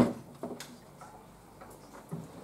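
A loud thump of a handheld microphone being set down on a table, followed about half a second later by two lighter knocks as it settles.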